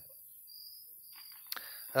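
Quiet pause with faint steady hiss and a soft breath, broken by a single small click about a second and a half in; a man's voice starts right at the end.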